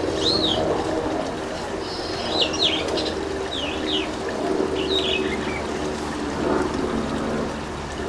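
Birds chirping: a short series of high-pitched calls roughly once a second, fading out about five seconds in, over a steady low hum.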